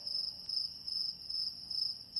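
Crickets chirping sound effect: a high, thin trill pulsing about four times a second, the 'crickets' gag for an awkward silence with nothing to say.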